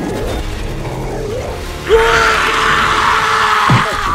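Movie-trailer soundtrack of music and sound effects. About halfway in, a sudden loud, harsh sound starts and holds for nearly two seconds over a steady low tone, then cuts off.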